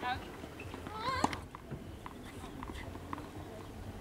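A person's voice gives two short wavering cries on a tennis court, the second rising in pitch, followed by a few faint light taps.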